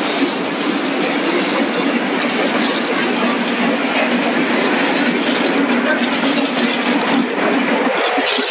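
Tortilla-chip production line machinery running: a steady, loud mechanical noise with a constant low hum and no breaks.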